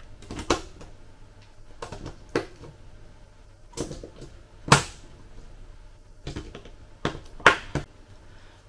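Scattered sharp plastic clicks and knocks, about a dozen at uneven intervals with the loudest a little under five seconds in, as a hobby RC transmitter is handled and its battery compartment is opened.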